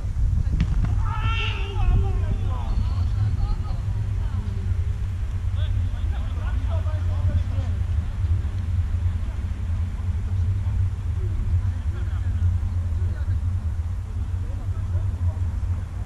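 Distant voices of players calling out across a football pitch, the clearest call about a second in, over a steady low rumble.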